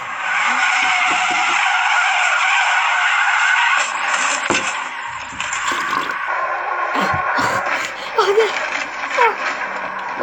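Car tyres screeching as a car drifts: one long, loud squeal for about the first four seconds, then more screeching broken by a few sharp knocks.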